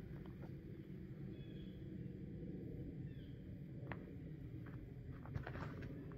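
Faint outdoor ambience: a steady low rumble with a few short, high, falling chirps, typical of birds, spread through it, and a single sharp click just before the four-second mark.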